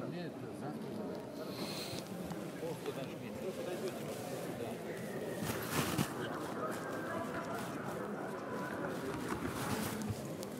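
Indistinct voices in a large, echoing sports hall, with a sharp knock about six seconds in.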